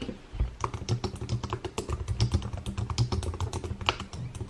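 Fast typing on a computer keyboard: a quick, uneven run of key clicks as a search query is typed in.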